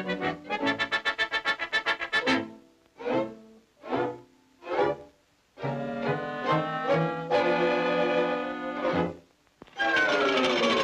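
Orchestral cartoon score with brass: a run of quick repeated notes, then three short separate chords, then a chord held for about three seconds that stops shortly before the end.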